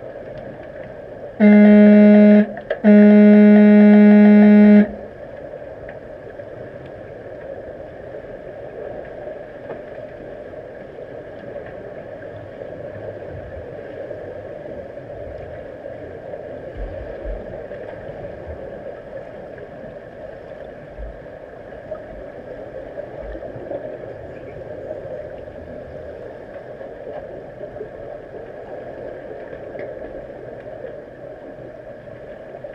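Underwater signal horn sounding two low, buzzing blasts about a second and a half in, one short and one about two seconds long, heard through the water. After the blasts there is a steady underwater hum with faint bubbling and knocks.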